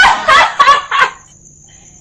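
A woman's loud, high-pitched warbling cries in a few quick bursts, stopping about a second in. Crickets chirp steadily in the background.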